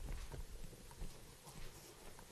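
Faint footsteps, a few soft knocks over low room noise.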